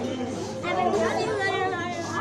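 Indistinct voices talking at a lower level than the nearby speech: background chatter.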